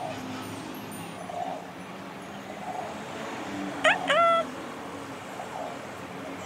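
Two quick rising animal calls about four seconds in, the second held briefly, over steady background noise.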